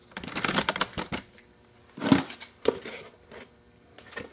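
Clattering and rattling of things being handled, a quick run of clicks in the first second, then one louder knock about two seconds in and a couple of lighter clicks after it.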